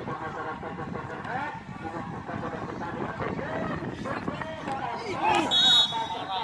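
Many spectators' voices calling and shouting around a football match. Near the end a short, shrill referee's whistle blows as a player goes down.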